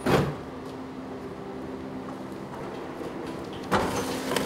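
A cardboard box set down on a wooden workbench with a single thump near the end, over a steady low hum. A loud swishing burst at the very start, a door or a transition sound, is the loudest thing.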